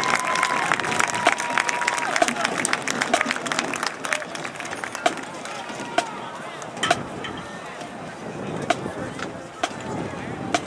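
Stadium crowd clapping and cheering, the applause thinning into scattered claps over general crowd chatter.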